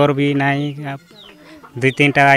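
A man's voice speaking for about the first second, then a quieter stretch with chickens clucking faintly in the background.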